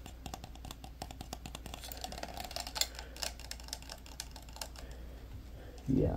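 Plastic computer mouse being clicked rapidly with the fingers: many quick, irregular clicks, one of them louder about halfway through.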